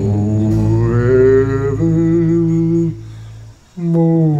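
A man's voice sings long, wordless held notes into a microphone over a sustained backing-track chord, the first note bending slightly upward and the second held level. About three seconds in, both voice and music drop away briefly before he starts a new note just before the end.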